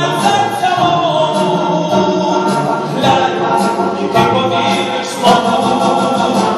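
A vocal ensemble singing a song in several-part harmony, heard live in a concert hall from the audience.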